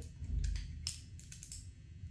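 Light clicks and taps of a plastic makeup compact being handled with long acrylic nails and a brush: a quick cluster of about half a dozen clicks from about half a second in.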